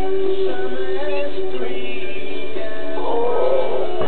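Background music: held chords with a melody line over them, growing busier and more wavering near the end.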